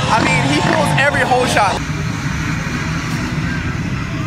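A man's excited yell, then, after a cut about two seconds in, several off-road dirt bike engines running steadily together at a race start line.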